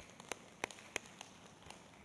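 Sparse audience applause: a few scattered hand claps, faint, over a light hiss.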